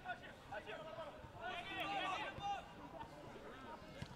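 Faint, distant shouting voices over open-air field ambience, loudest from about a second and a half to two and a half seconds in.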